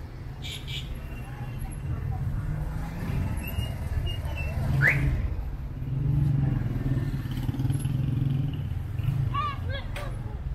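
Street traffic: the steady low rumble of car and motorbike engines, swelling in the middle, with indistinct voices of passers-by. A brief rising squeak about five seconds in.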